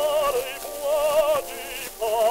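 An operatic tenor voice singing two long held notes with a wide vibrato, with orchestral accompaniment, on an early acoustic gramophone disc recording with surface hiss.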